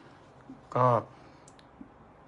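A man's voice saying one short word amid pauses, with a few faint clicks around it.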